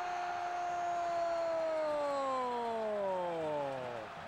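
Brazilian TV football commentator's long drawn-out goal cry, "goool": one held shout, steady at first, then sliding down in pitch until it runs out near the end.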